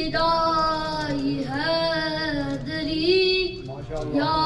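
A boy singing a devotional poem into a microphone in a high voice, three phrases of long held notes that glide between pitches.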